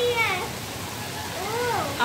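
Heavy rain falling in a steady hiss. A voice trails off at the start, and a short rising-and-falling call sounds about a second in.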